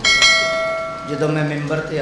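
A bright bell ding sound effect from a subscribe-button and notification-bell animation, struck once and ringing out for about a second before fading.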